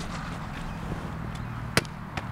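A football slapping into a goalkeeper's gloves as he catches it in a diving save: one sharp slap near the end, over steady low background noise.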